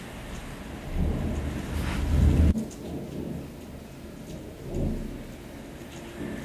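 Thunder rumbling deep during a thunderstorm: a rumble builds about a second in and cuts off suddenly about two and a half seconds in, with a second, shorter rumble near the end, over steady rain.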